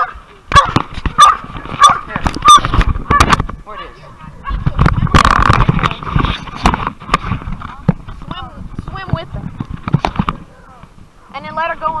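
Captured wild hog squealing in a run of short, loud cries about two a second, then one longer, harsher squeal around five seconds in, with quieter squeals after.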